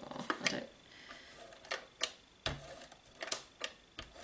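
Scattered sharp clicks and light knocks, about seven over a few seconds, of craft tools and papers being handled on a desk cutting mat.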